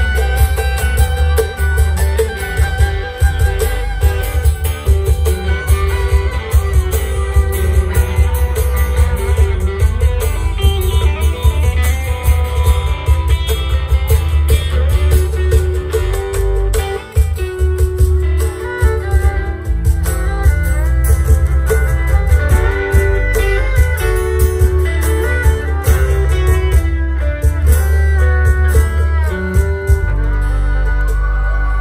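Live band playing an instrumental break: an electric guitar lead over bass guitar and acoustic guitar, with a steady beat.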